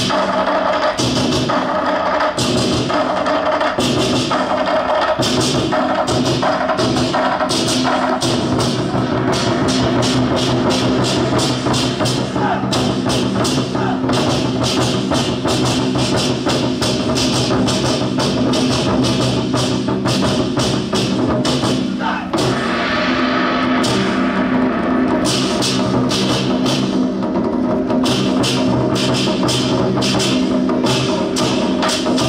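An ensemble of large Taiwanese war drums (barrel drums) beaten with wooden sticks in fast, driving rhythms over music with long sustained notes. About 22 seconds in the sound dips briefly and then shifts to a brighter texture.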